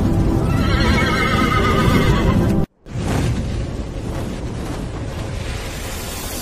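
A horse whinnying, a sound effect over a low rumble. The whinny comes about half a second in and lasts about two seconds. The whole sound cuts out abruptly for a moment shortly after, then the rumble resumes.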